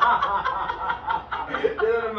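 A man laughing in short, broken bouts.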